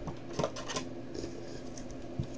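A few light clicks and taps of a trading card in a hard plastic holder being handled, over a steady low hum.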